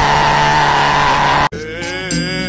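A man's loud, drawn-out scream that rises in pitch and is then held. It cuts off abruptly about one and a half seconds in, and music with singing begins.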